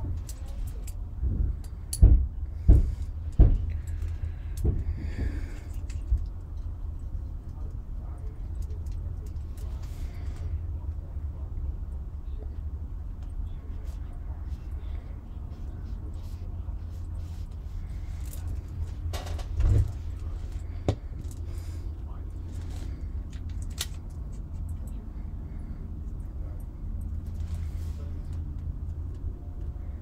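Quiet brush and paint-tin handling over a steady low hum: a few sharp clicks and knocks, three in quick succession about two to three seconds in and another about twenty seconds in, as a paintbrush and a metal watercolour tin are handled on the desk.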